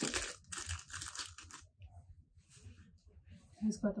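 A small clear plastic bag of furniture-assembly hardware crinkling as it is handled and torn open. There is a run of crackly rustles in the first second and a half, then fainter handling.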